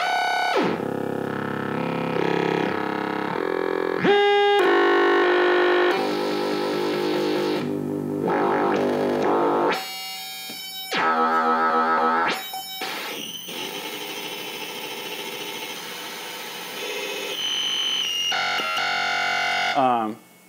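Modular synthesizer played live through a Noise Engineering digital oscillator module, its knobs being turned by hand. It makes a really noisy string of pitched, gritty tones whose pitch and timbre jump every second or two, opening with a rising glide and warbling in the middle, and it stops suddenly at the end.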